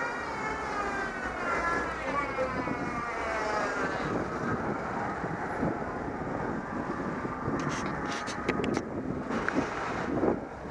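Street traffic noise with wind on the microphone. A whining tone with several evenly spaced overtones slowly wavers in pitch and fades out about four seconds in. A few sharp clicks come near the end.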